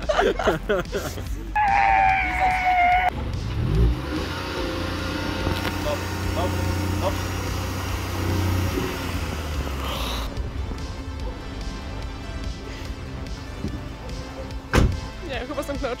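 Small hatchback's petrol engine revved hard as it pulls away up a steep slope, with the clutch deliberately slipped to get it moving. A brief steady whine comes about two seconds in, and the revs drop back near the middle to a low steady running sound, with one sharp knock near the end.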